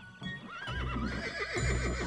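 A horse whinnying, a wavering call that starts about half a second in, over background music.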